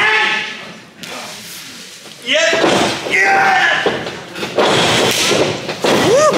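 Wordless shouting and yelling at ringside during a pro wrestling match, with a couple of heavy thuds on the ring canvas in the second half as the wrestlers move in the ring.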